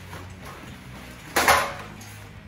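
A washed backpack being pulled out of a front-loading washing machine: fabric handling, then one loud, short clatter about a second and a half in as the pack and its buckles knock against the drum and door.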